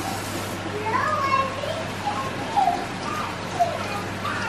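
A young child vocalizing playfully in short rising and falling non-word sounds, over a steady low hum.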